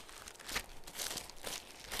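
Faint rustling and crinkling of thin paper pages being turned, in a few short soft strokes, as Bibles are paged through to find a chapter.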